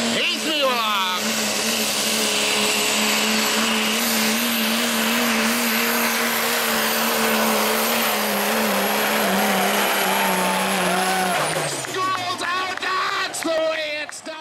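Dodge Ram pro mod diesel pickup pulling a sled at full throttle. The engine is held at high, steady revs with a thin high whine above it, then the revs fall away about eleven and a half seconds in as the pull ends.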